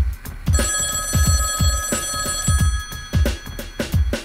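A telephone ringing once for about two seconds, over background music with a steady drum beat.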